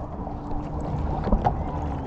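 Jet ski engine running low and steady at idle, with wind on the microphone. It is idling low enough that the rider fears it will cut out.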